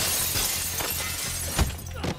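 Glass shattering in a sudden loud crash, with the high breaking sound trailing on for over a second, followed by a short heavy thud near the end.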